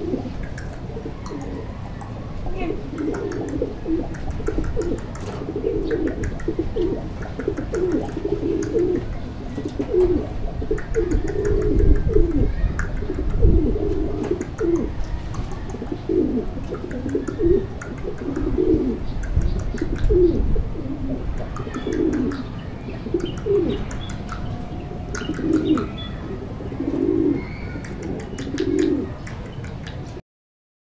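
Domestic pigeons cooing over and over in short low phrases, with a low rumble partway through.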